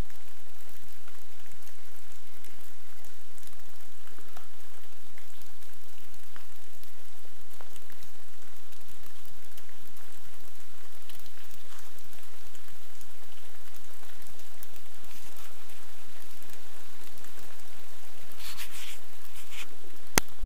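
Steady rain falling, with scattered ticks of single drops close by and a brief louder run of them near the end.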